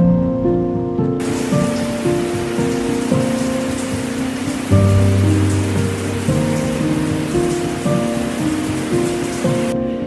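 Background music, with a steady rushing hiss of falling water over it that cuts in about a second in and cuts out just before the end.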